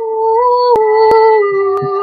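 A woman's voice holding a long wordless sung note that bends gently up and down in pitch, over a backing track with a soft low beat about twice a second.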